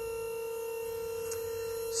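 Battery-powered KTI hydraulic pump running with a steady, even whine as it powers the trailer's tilt deck up.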